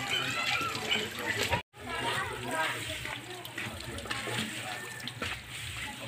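Muddy drilling water pouring from an open PVC well pipe and splashing onto concrete, with faint voices in the background and a steady low hum. The sound cuts out completely for a moment just under two seconds in.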